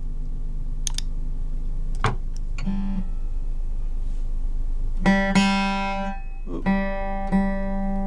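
Acoustic guitar with single notes picked one at a time and left to ring, not strummed. A softer note comes early, then from about halfway a stronger note is struck three times. Typical of sounding a minor-seventh interval against its root while mapping out a scale shape.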